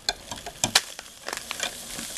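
Metal spoon stirring monoammonium phosphate powder into hot water in a cup, clicking and scraping irregularly against the cup's sides and bottom.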